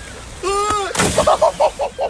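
Waves washing over the rocks: a short shout and a sharp knock, then a loud burst of crashing, splashing water about a second in, followed by a person's voice in short rapid bursts.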